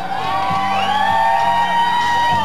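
Live rock band playing an instrumental passage: one long held lead note that glides slightly upward, over a steady bass and drum backing.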